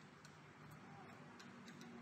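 Faint, irregular light metallic clicks of a small hand tool touching the bolts and steel bracket of a spin bike's handlebar mount, over a low steady hum.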